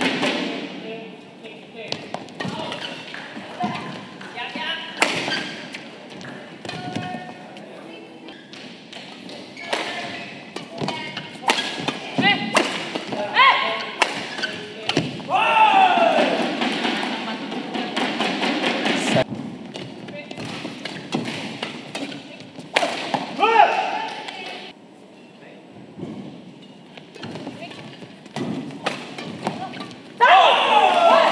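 Badminton rally in a sports hall: repeated sharp racket strikes on the shuttlecock and footfalls on the court, mixed with players' shouts and voices.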